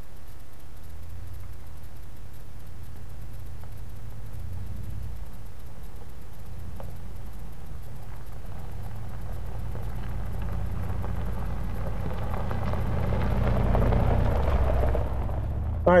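A Jeep Commander SUV approaching along a gravel forest road, its engine and tyres growing steadily louder and loudest near the end.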